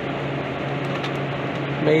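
Steady whirring hum of running walk-in freezer refrigeration equipment, a fan-like drone with a low tone, with a couple of faint ticks from the sensor being handled.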